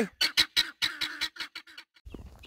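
Helmeted guineafowl calling: a quick run of short, clipped calls, about four or five a second, growing fainter near the end.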